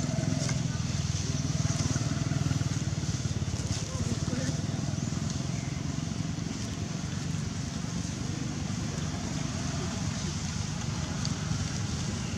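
Steady outdoor background noise: a continuous low rumble with a murmur of voices and a steady high hiss, without pauses.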